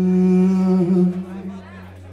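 Live garage-rock band in a quiet break: one long held note, with a steady low amplifier hum under it, fading away near the end.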